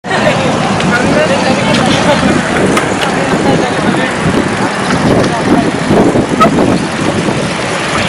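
Steady road and wind noise from a slow-moving vehicle, with indistinct voices mixed in.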